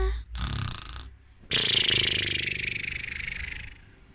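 A person imitating snoring for a sleeping toy: a short rough in-breath about half a second in, then a long breathy, fluttering out-breath from about a second and a half in that fades away.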